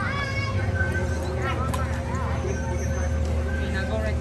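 Children's high-pitched calls and chatter in the distance over a steady low hum of outdoor background noise.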